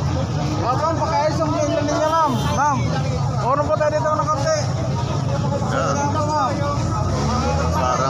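People talking close by, over a steady low rumble.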